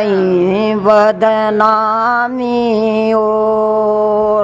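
Unaccompanied female singing of a Haryanvi folk song of the rains, drawn out in long held notes with slow slides in pitch and a couple of brief breaks for breath.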